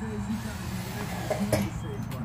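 A low, indistinct voice over a steady low rumble, with one short sharp rustle or click about one and a half seconds in.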